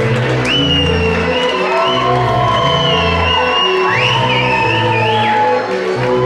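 Loud runway music with a steady, repeating bass line and a high, wavering melody line that glides up in pitch about half a second in and again near the fourth second.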